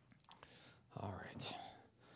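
A man's voice murmuring or half-whispering a few words, with a soft hiss, about a second in, preceded by a few faint clicks.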